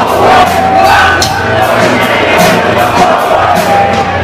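Heavy metal band playing live, loud, with drums hitting on a steady beat of about three a second and a crowd shouting along.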